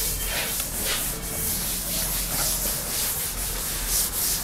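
A cloth duster wiping a chalkboard clean, in back-and-forth rubbing strokes of cloth on the board's surface.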